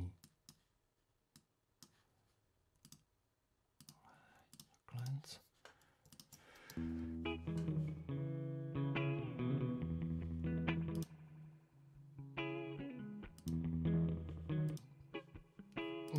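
A few sparse clicks, then about seven seconds in a recorded electric guitar part starts playing back, held chords changing every second or two. The guitar was recorded through effect pedals.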